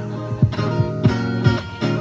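Guitar strummed in a steady rhythm during an instrumental stretch of a song, with ringing chords and a sustained low note.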